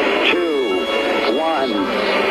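A voice with the low end cut away, thin and narrow like a radio transmission, in pitched phrases that rise and fall.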